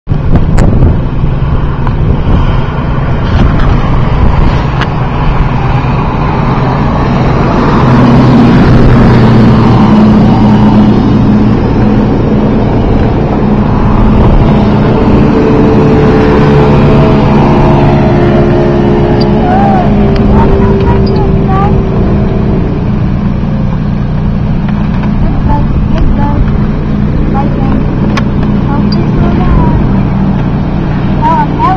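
Outboard motor of a center-console powerboat running at speed as it passes close by: its engine note builds, is strongest around the middle, then fades as it moves off. A heavy low rumble runs under it throughout.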